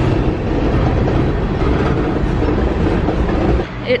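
Freight train of tank cars passing close by: a steady, loud rumble of wheels on rail that cuts off abruptly near the end.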